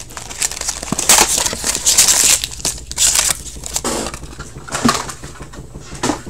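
Hockey card pack wrappers being torn open and crinkled, in a string of irregular rustling bursts.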